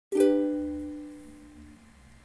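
Soprano ukulele: a single G major chord strummed just after the start, ringing and fading away over about a second and a half, followed by soft low notes.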